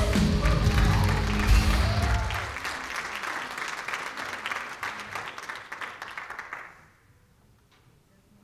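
A church praise band's song ending on its final chord about two seconds in, followed by congregation applause that dies away and stops shortly before the end.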